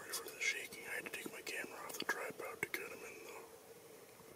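A person whispering close to the microphone, with a few sharp clicks, trailing off about three and a half seconds in.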